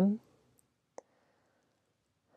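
A woman's voice finishes a word, then a pause of near silence broken by one short, faint click about a second in.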